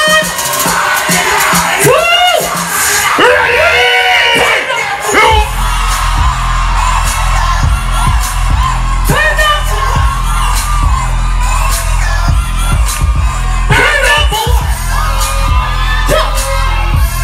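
Live dancehall performance heard through a PA: amplified vocals over the music, with crowd noise. A heavy bass beat drops in about five seconds in and carries on under the voices.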